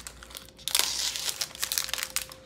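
Clear plastic sleeve crinkling as it is cut open with scissors and pulled off a notepad. The crinkling swells into a loud burst under a second in, then goes on in smaller crackles.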